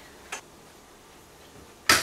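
Pneumatic brad nailer firing a brad into a hardboard strip: one loud, sharp shot near the end, after a faint click about a third of a second in.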